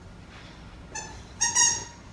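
French bulldog giving two short high-pitched whines, the second louder and longer.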